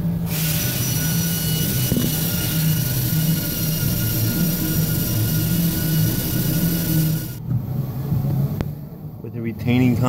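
A jet of spray hissing steadily with a faint whistle for about seven seconds, then cutting off suddenly, as the injector bore in the cylinder head is cleaned out. A low steady hum runs underneath throughout.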